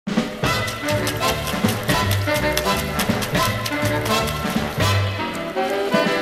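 Music with a steady beat and a bass line.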